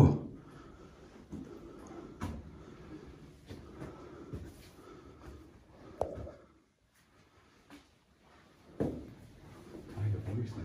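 Quiet stairwell with soft footsteps and a few scattered knocks as someone climbs the stairs; it goes almost silent for a couple of seconds after a knock about six seconds in.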